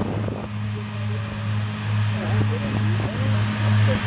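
Fendt 826 Vario tractor's six-cylinder diesel engine running under load while driving a Claas Disco 3100 FC triple disc mower through grass. It makes a steady low drone that swells and fades slightly, over the mower's even whirring.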